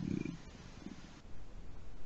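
Faint, irregular low rumble of open microphones on an online call, in a pause between speakers.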